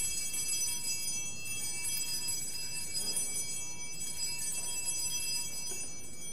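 Altar bell rung at the elevation of the chalice: a bright, high metallic ringing that starts just before and rings on, thinning out near the end.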